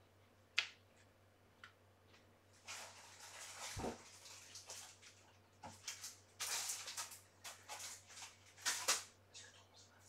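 Faint rustling and sliding of paper and card being handled on a desk, in several short bursts, with a sharp click about half a second in.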